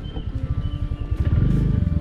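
Motorbike engine running while riding along a dirt track, its low rumble growing louder about a second and a half in as the rider speeds up.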